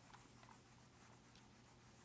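Faint rubbing of a whiteboard eraser wiping dry-erase marker off the board, in several short strokes.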